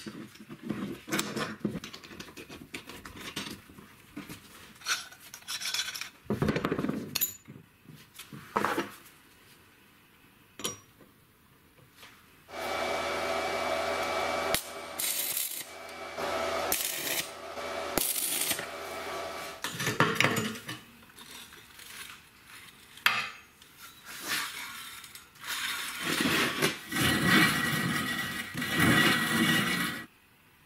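Steel parts clinking and knocking as a bicycle sprocket cluster is handled on a steel plate. About twelve seconds in, a stick-welding arc starts running in bursts of a few seconds each, welding the sprocket cluster to the plate. The longest bursts come right after it starts and again near the end.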